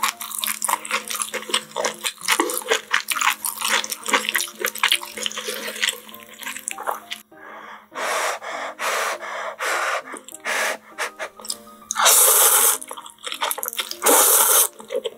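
Close-miked ASMR eating of spicy instant ramen: wet clicking sounds of chopsticks in the broth and chewing, then a run of short noodle slurps from about eight seconds in, and one long, loud slurp near the end.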